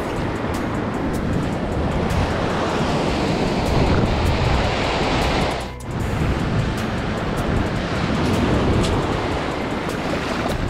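Sea surf washing in the shallows, with wind on the microphone, a steady rushing noise that dips briefly a little before six seconds in. Background music plays underneath.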